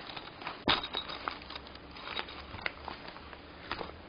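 Nylon fabric bag rustling and crinkling as it is handled and unfolded, with scattered small clicks and one sharper tap about 0.7 s in.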